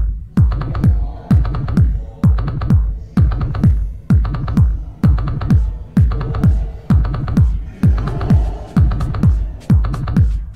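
Minimal techno: a deep drum-machine kick whose pitch drops on every hit, about two beats a second, each topped with a short click, over a faint synth line in the middle range.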